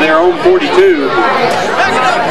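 Indistinct chatter of spectators close by. One high-pitched voice calls out in the first second, then several voices overlap.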